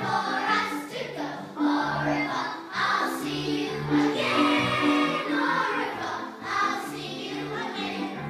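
Group of children singing together on stage, with instrumental accompaniment carrying a steady, repeating bass line.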